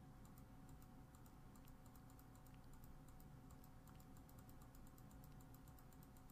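Near silence: faint, rapid computer keyboard clicks, several a second, over a faint steady electrical hum.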